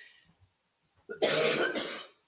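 A woman coughs about a second in, a loud burst lasting most of a second, after the fading end of a throat clearing. She has a frog in her throat.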